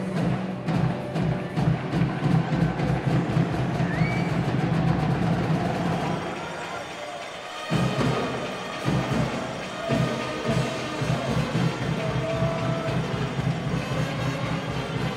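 Music with a heavy, steady drum beat played loud in the arena, the low beat dropping out for about a second around the middle.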